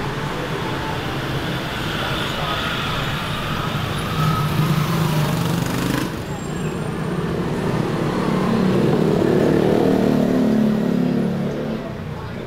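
Busy city street at night: steady traffic noise with motorbikes and cars going by, under the chatter of people nearby. A vehicle passes close by, louder from about 8 to 11 seconds in.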